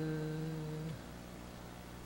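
A woman's drawn-out hesitation sound, "uhh", held at a steady pitch for about a second, then room tone with a low steady electrical hum.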